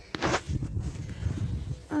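Rustling and a fluctuating low rumble from a hand-held phone carried while walking over ground covered in dry needle litter, with a short breathy burst just after the start. A woman's voice begins at the very end.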